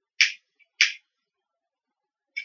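Two short, sharp rasps about half a second apart: a cigarette lighter's flint wheel being struck twice to light a cigarette.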